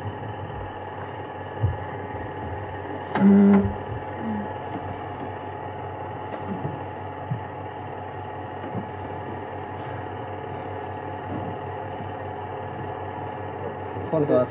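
Steady background hum and hiss of an old recording, with a few faint steady tones in it. About three seconds in comes one short, louder voiced sound, like a person's 'mm'.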